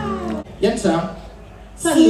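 A live band's song ends about half a second in on a falling pitch slide, then a short, high, drawn-out voice sounds from the stage before talking resumes near the end.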